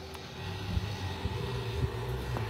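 A motor vehicle's engine running with a low, steady hum that grows louder about half a second in.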